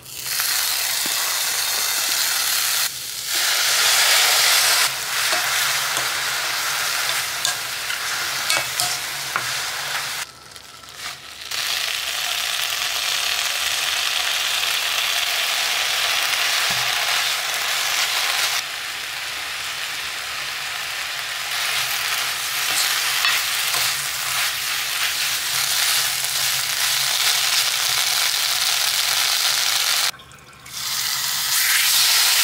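Sliced mushrooms and then leafy greens sizzling as they are stir-fried in a hot nonstick wok, with the rustle and scrape of stirring. The steady frying hiss drops away briefly about ten seconds in.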